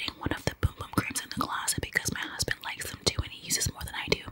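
A woman whispering close to the microphone, in quick, breathy, unvoiced speech.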